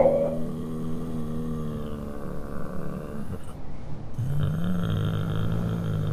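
Low, drawn-out groaning of zombies, performed as voices. One groan is held at a steady pitch for about three seconds, and a second begins about four seconds in.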